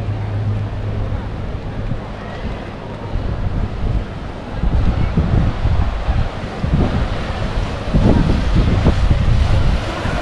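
Wind buffeting the action camera's microphone in irregular gusts, growing stronger about halfway through, over the steady wash of surf breaking on a rocky shore.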